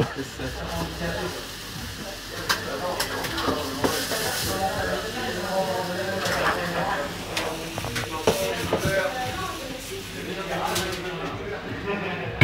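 Gambas, just flambéed with ouzo, sizzling in a hot frying pan, with a few sharp clicks of a utensil against the pan.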